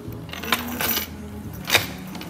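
Gold-tone metal chain and hardware of a Dior Caro leather handbag clinking as the bag is handled: a click about half a second in, a brief rattle, and a louder sharp click near the end.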